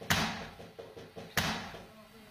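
A house's back door being beaten from outside in an attempt to force it in: two heavy blows about a second and a half apart, the first the loudest, each with a short echoing decay.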